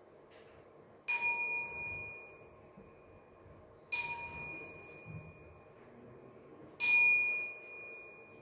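A small prayer bell struck three times, about three seconds apart, each stroke ringing out with high, clear tones and fading away.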